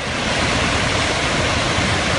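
Steady rushing of a torrent of muddy floodwater released by a dam collapse, a continuous noise with no distinct events.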